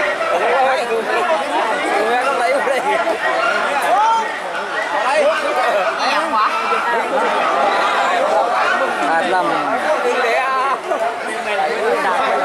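Crowd of many voices shouting and chattering over one another without a break, cheering on long-boat racing crews.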